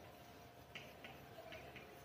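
Faint chalk taps and scratches on a chalkboard as letters are written, a few short ticks in the second half.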